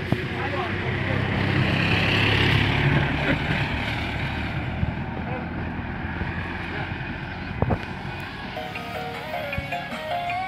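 A motorbike passes along the road, its engine hum and tyre hiss swelling and then fading over the first few seconds. Music from a portable speaker plays underneath, clearer near the end.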